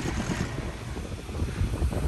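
Wind noise on the microphone, a steady low rumble, while riding an open chairlift.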